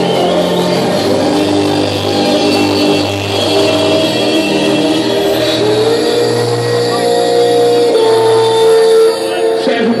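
Loud electronic dance music from a DJ set over a club sound system, with held synth chords and a rising sweep about halfway through. It dips briefly near the end.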